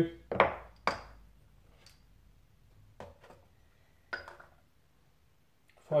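Piston-and-connecting-rod assemblies being handled and set down on a digital scale on a workbench: two sharp metal clunks in the first second, then a few lighter clinks.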